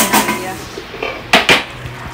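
Kitchen utensils and cookware knocking and clinking: a knock at the start, a quieter one about a second in, and two sharp ones close together about a second and a half in.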